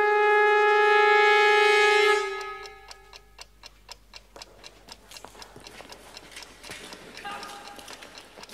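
The last held brass chord of a signature tune, fading out over the first three seconds. Then a clock ticking steadily and quietly.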